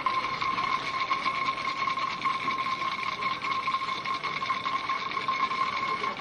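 An electric alarm-like ringing sound effect: a steady high tone with a fast rattle running through it, held at an even level.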